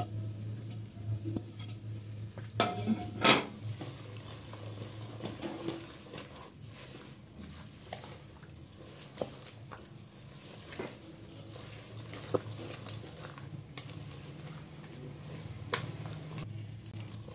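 A metal wire whisk stirring grated carrot and cabbage through a thick creamy dressing in a plastic bowl, with scattered clicks and knocks of the whisk against the bowl. The loudest knocks come about three seconds in and near the end. A faint low hum runs underneath.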